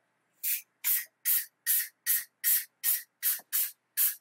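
Aerosol bubble-remover spray can hissing in short, even bursts, about two or three a second, misted over freshly poured resin varnish to pop the bubbles on its surface.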